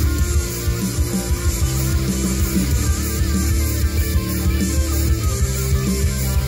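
Electric guitar being played in a heavy rock style, a run of notes with some held notes wavering in pitch.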